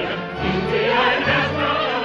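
Operetta chorus singing with orchestra from an old radio studio recording: massed voices over sustained low orchestral notes that change every half second or so.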